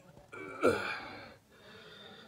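A man's breathy gasp-like exclamation, its pitch sliding down, about half a second in.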